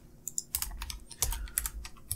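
Computer keyboard keystrokes: several quick, light key clicks.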